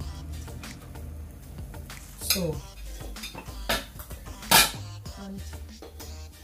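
A metal spoon scraping and clinking on a ceramic plate, and dishes knocking as they are handled, over background music. There are several sharp clinks, the loudest about four and a half seconds in.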